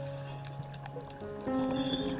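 Calm, slow background music of long held notes, with a new chord coming in about one and a half seconds in.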